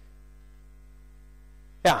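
Steady electrical mains hum, then a man says "Ja" near the end.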